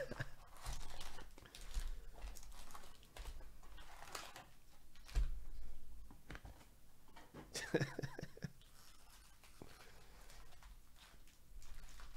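Foil card-pack wrappers crinkling and rustling as gloved hands lift the packs out of a cardboard box and lay them down, with a soft knock about five seconds in. A brief voice sound, like a chuckle, comes about eight seconds in.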